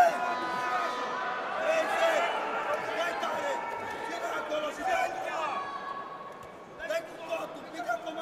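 Indistinct men's voices calling out with no clear words, and a few short sharp knocks near the end.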